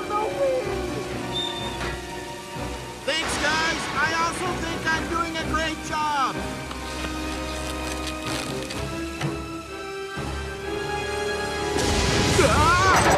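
Cartoon soundtrack of background music with rain effects, and a burst of vocal sounds about three to six seconds in.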